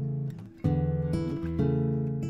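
Music on acoustic guitar: strummed chords left to ring, with a new chord struck about half a second in and another about a second and a half in.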